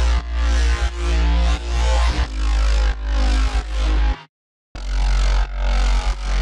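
Playback of a dubstep-style track's distorted, filter-swept Massive synth bass over a heavy sub-bass, in short repeated phrases about two-thirds of a second long. The music stops dead for about half a second a little after four seconds in, then carries on.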